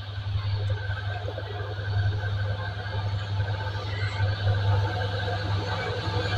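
Diesel locomotive approaching on the line, its engine a steady low drone that grows slightly louder as it nears.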